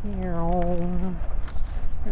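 A man's voice holding one long, slightly wavering note for about a second, a wordless hum or 'doo', over the steady low rumble of wind and tyres on a moving bicycle.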